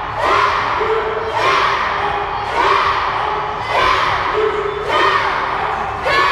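A group of young karate students shouting together in rhythm with their punching drill, five shouts about 1.2 seconds apart.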